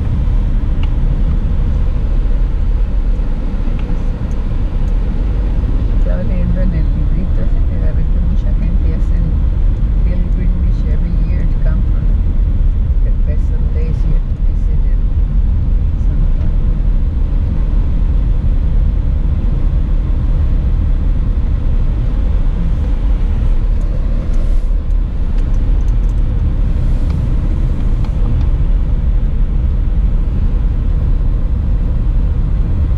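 Steady low rumble of a car's engine and tyres heard from inside the cabin as it drives slowly.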